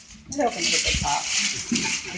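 Paper and a cardboard box being handled and unwrapped, a steady papery rustle, with a dull thump about a second in. Voices talk briefly over it.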